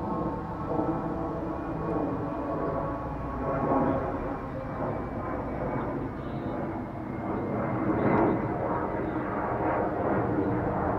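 A passing engine's steady droning hum with several level pitched tones, growing louder to a peak about eight seconds in.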